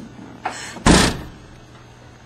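A car's trunk lid is pulled down and slammed shut: a short rustle, then one heavy slam about a second in.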